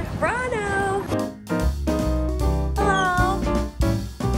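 Background music with a steady beat and bass, and a drawn-out vocal exclamation that slides up and then down in pitch near the start.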